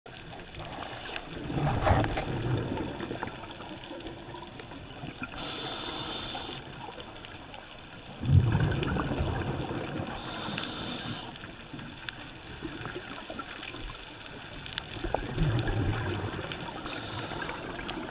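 Scuba regulator breathing underwater: three hissing inhalations alternating with bubbly exhalations, over a steady wash of water against the camera housing.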